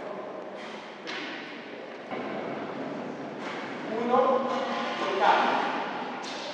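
A man's voice speaking briefly in a large, echoing sports hall, over a steady background noise of the hall.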